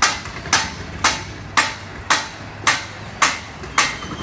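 A hammer striking repeatedly in a steady, even rhythm of about two blows a second, eight strikes in all.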